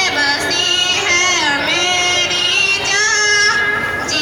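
A child singing solo, with long held notes that glide up and down between phrases.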